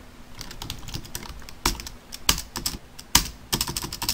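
Typing on a computer keyboard: a run of keystrokes at an uneven pace, a few struck harder than the rest.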